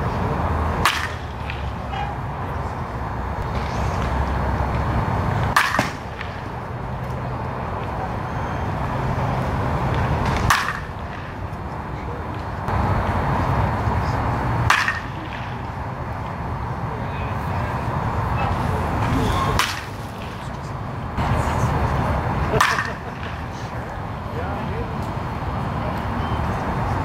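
A baseball bat striking pitched balls: six sharp cracks, roughly every four to five seconds, over a steady low background rumble.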